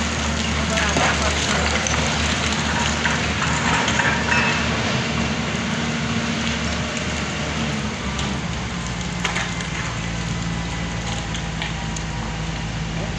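Diesel engine of a Doosan wheeled excavator running steadily, with loose shale and slate crackling and clattering as rock is worked at the face. The engine note shifts about eight seconds in.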